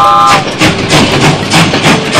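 Steam-train sound effect: a whistle toot that ends about half a second in, then a rhythmic chugging at about four chuffs a second.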